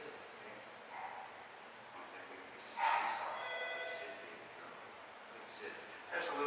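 A dog gives one short, high-pitched yelp about three seconds in, over faint indoor background noise.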